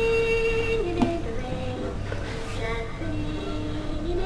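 Musical plush teddy bear toy playing a tune: long held notes that step down in pitch, with a light knock about a second in.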